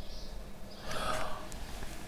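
A man's soft breath about a second in, faint over quiet room tone.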